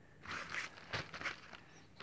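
Handling noise: short bouts of rustling and scraping, with one sharp knock about halfway, as a phone is swung about and a cardboard advent calendar box is handled.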